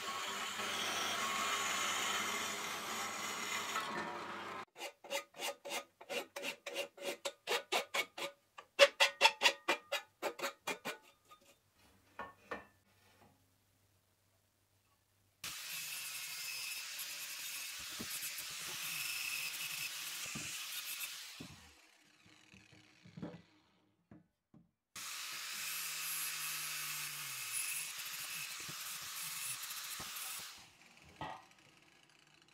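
Metal bandsaw cutting through a powder-coated steel stair stringer, then a run of quick rasping strokes, about four a second, lasting some six seconds. After a short quiet gap, a Makita angle grinder grinds the steel in two stretches of several seconds each, with a few knocks between them.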